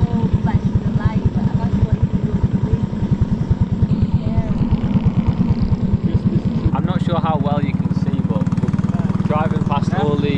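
Small boat's engine running with a rapid low chugging, its beat evening out into a steadier drone about seven seconds in.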